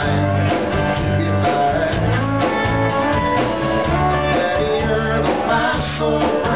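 A live band playing: electric guitars and an acoustic guitar over a low bass line and drums, with a man singing lead.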